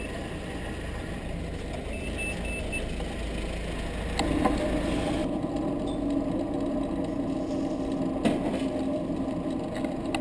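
Vehicle engine noise around parked vans. A short run of high beeps comes about two seconds in, and from about four seconds in an engine runs with a steady hum.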